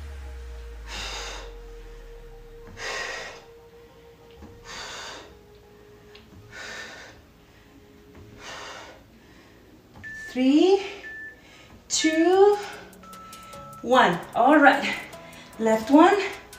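A woman breathing out hard in a steady rhythm as she exercises, about one breath every two seconds, over quiet background music. From about ten seconds in, short voiced sounds that rise in pitch take over and are the loudest part.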